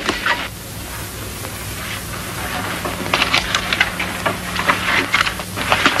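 Pupils moving back to their seats in a classroom: scattered knocks, scrapes and footsteps of children settling at wooden desks and chairs, thickest in the second half. Under it runs a steady hiss and low hum from the old film soundtrack.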